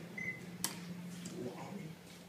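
A short, high electronic beep from the elevator, then a sharp click about half a second later, over a steady low hum that stops near the end.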